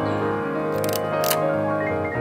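Piano background music, with two sharp mechanical clicks from a Yashica digiFilm Y35 camera being worked by hand, a short rattling one a little under a second in and a single click about half a second later.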